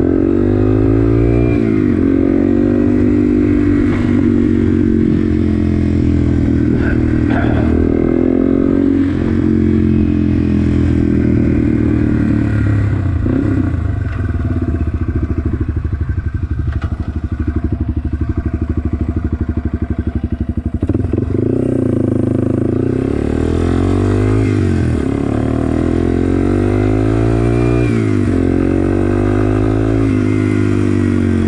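Yamaha TW200's air-cooled single-cylinder four-stroke engine on the move, its pitch climbing through each gear and dropping back at the shifts. About halfway through it falls to a low, slow pulse as the bike slows and rolls near idle, then it revs up again and pulls away through the gears.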